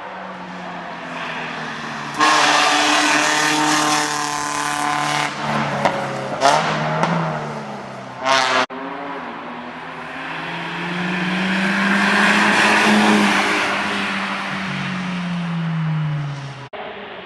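Race car engine at a hillclimb accelerating hard through a bend, its pitch rising and dropping with gear changes, with a couple of short high squeals around six and eight seconds in. After an abrupt cut, another race car's engine is heard approaching, growing louder to a peak about thirteen seconds in and then fading.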